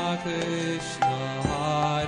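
Devotional chanting music: a sung mantra over sustained accompaniment, with several sharp drum strokes.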